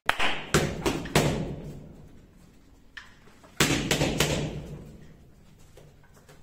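Several heavy thuds, the loudest in the first second and another about three and a half seconds in, each trailing off in a long echo.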